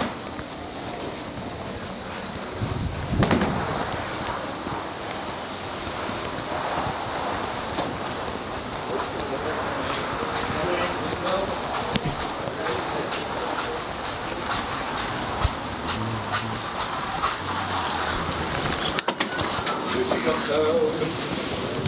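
Steady rushing noise of wind on the microphone while walking, with a loud low buffet about three seconds in and light footstep clicks through the second half.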